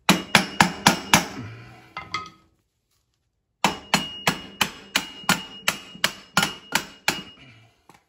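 Hammer blows on a steel driver, tapping a round fitting into its housing in the kart frame. A quick run of about five sharp strikes is followed by a pause, then about a dozen more at three or four a second, with a faint metallic ring under them.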